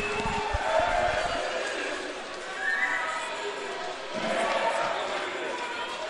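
Indistinct voices of players and officials, carrying with reverb in a sports hall, with a few low knocks in the first second or so.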